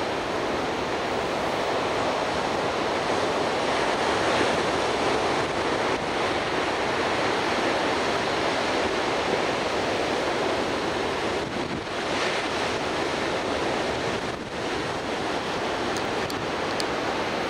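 Ocean surf breaking on a sandy beach: a continuous rush of water that swells about four seconds in and eases briefly twice near the end, with wind on the microphone.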